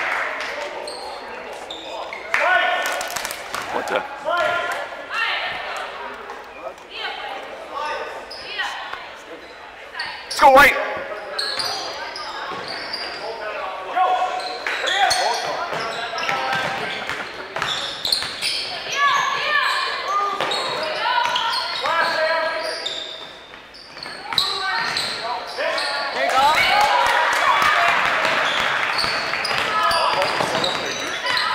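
Basketball being dribbled and bouncing on a gym floor during play, amid indistinct voices of players and spectators in the gymnasium. One loud sharp knock stands out about ten seconds in.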